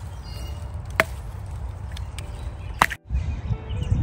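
Young Japanese knotweed shoots snapped off by hand: two loud, sharp pops of the hollow stems breaking, about a second in and again just before the three-second mark.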